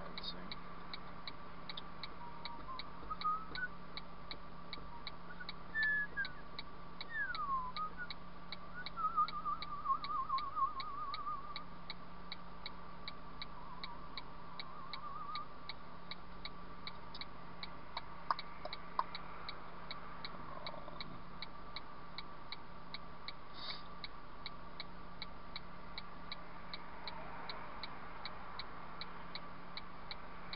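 Car turn-signal indicator ticking steadily, about two or three clicks a second, over the low hum of the engine idling while the car waits at the lights. A few high whistled chirps and a short warbling trill stand out in the first third.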